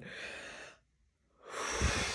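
A man breathing out heavily through a painful stretch; after a short silent pause, he takes another long breath.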